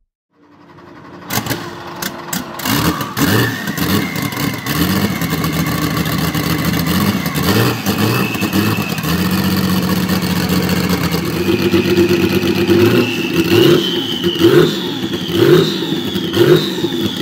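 Porsche 935 Kremer K3's turbocharged flat-six race engine firing up with a few irregular bangs about a second in, then running at a lumpy idle with repeated throttle blips, each rev rising and falling. The blips come closer together and louder near the end.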